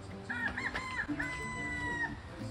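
A rooster crowing once: a few short broken notes, then one long held note that stops near the end, over background music.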